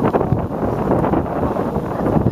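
Wind buffeting the camera microphone, an uneven rumbling noise.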